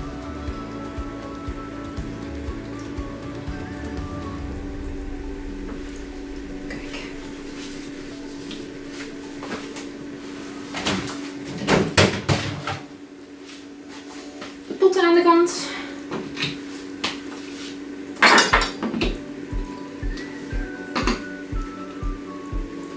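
Background music with a steady tone and a beat, over clattering and clinking of paint cups and jars being handled, loudest about halfway through and again a few seconds later, with a brief wavering pitched sound between the two.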